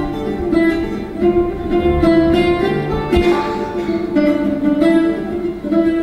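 Instrumental passage of Algerian chaâbi music, led by a quick run of plucked notes on a mandole.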